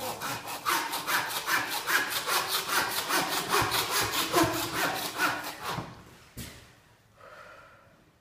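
A butcher's hand bone saw sawing through a raw carcass joint with fast, even back-and-forth strokes, stopping about six seconds in.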